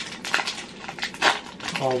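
Foil wrapper of a Yu-Gi-Oh booster pack crinkling and rustling as it is handled and opened by hand, with two louder crackles, one about a third of a second in and one just past a second.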